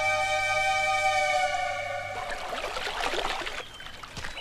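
Film background music: one long held note that breaks off about two seconds in, followed by softer music fading away.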